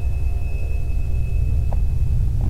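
Steady low rumble of microphone background noise with a thin, steady high-pitched whine over it, between spoken remarks.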